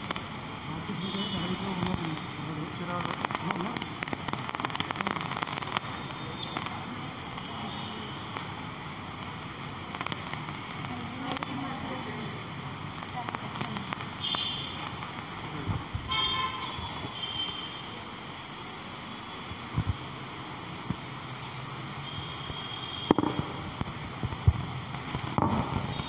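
Room sound of a hall: faint, indistinct voices and scattered clicks and crackles over a steady hiss, with a few sharper knocks in the last few seconds.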